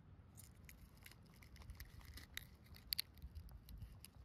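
Faint scratching of a knife blade prying and scraping at AAA battery fragments lodged in a clear gel block, with a string of small clicks and two sharper clicks about three seconds in.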